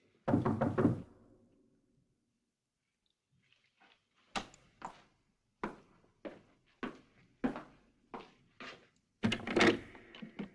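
A quick run of loud knocks on a heavy door. After a short quiet, footsteps on a hard floor, about one step every 0.6 seconds, then a loud clatter at a cell door near the end.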